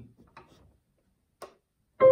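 Near silence with a few faint, irregular clicks and one sharper click about one and a half seconds in: hands settling onto the keys of a Roland digital piano.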